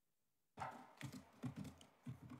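Clicks and taps like typing on a laptop keyboard, picked up close by a desk microphone. It comes in suddenly about half a second in, after dead silence.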